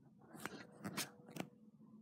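A few faint, short clicks and light rubbing, about half a second apart, from a phone being handled and set back on its tripod.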